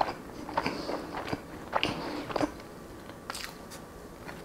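Close-miked chewing of a mouthful of Nutella-spread toast: short wet mouth clicks and smacks, several in the first two and a half seconds, then fewer and quieter.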